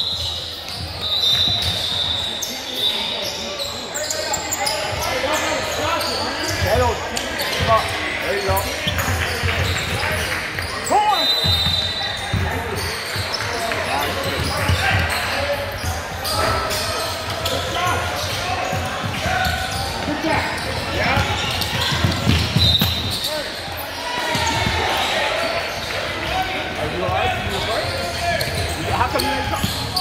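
Basketball dribbled and bouncing on a gym's hardwood floor amid continuous spectator chatter and calls, echoing in a large hall. A few short high-pitched tones come about a second in, around 11 seconds in and around 22 seconds in.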